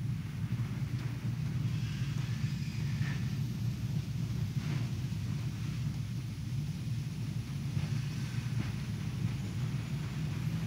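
A low, steady rumble with faint hiss above it: background room noise with no speech or singing.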